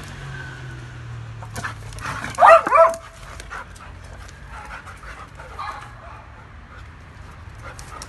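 A dog barks once, loud and high, about two and a half seconds in, with a softer dog vocal sound near six seconds, amid light clicks and scuffles as two dogs play.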